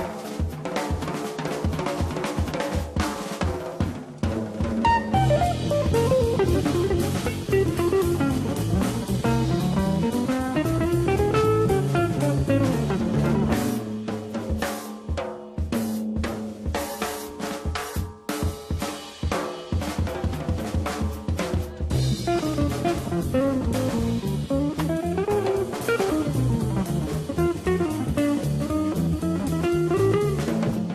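Live jazz with an archtop electric guitar and a drum kit trading eight-bar phrases. The drums play alone at the start and again in the middle, and fast guitar runs over the drums fill the stretches between.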